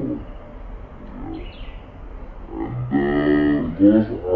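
A cow mooing once, a single long low call about three seconds in that lasts just over a second.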